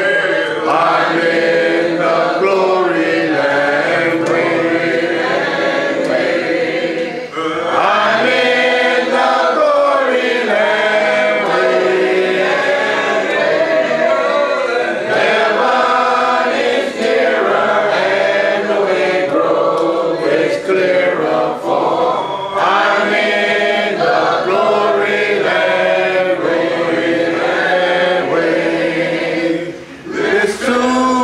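A church congregation singing a hymn together in unaccompanied a cappella voices. The singing carries on steadily, with a brief breath break about seven seconds in.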